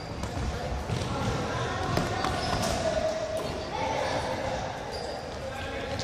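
Youth floorball play in a sports hall: sharp clacks of plastic floorball sticks and ball and footsteps on the wooden floor, with children's voices and drawn-out calls echoing in the large hall.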